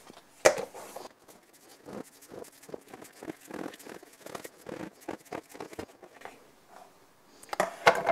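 Flour and diced raw chicken being shaken in a lidded plastic bowl. A sharp click about half a second in as the lid snaps on, then quick rattling thumps, several a second, for about four seconds.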